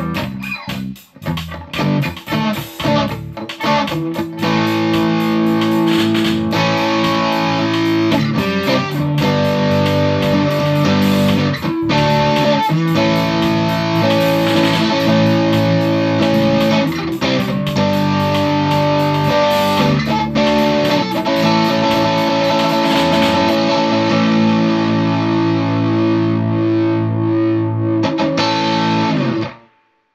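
Electric guitar played through a Monarch Musical Devices Lion Drive overdrive pedal, switched on, giving a driven, distorted tone. Short, choppy chords for the first few seconds give way to sustained chords, and the sound cuts off abruptly near the end.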